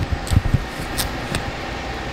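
Steady street background noise, with a few low thumps of camera handling in the first half-second and two short clicks about a second in.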